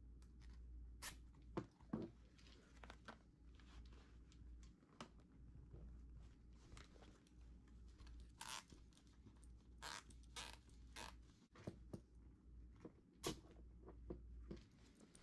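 Faint handling of a canvas bag with several short ratcheting zips, most in the second half, as nylon zip ties are pulled tight through the fabric.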